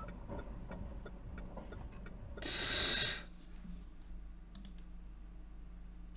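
Faint computer mouse clicks scattered through, with a short burst of hiss lasting under a second about two and a half seconds in.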